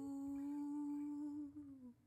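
A woman's voice holding one soft hummed note, which dips in pitch and fades out near the end. The acoustic guitar chord is damped right at the start.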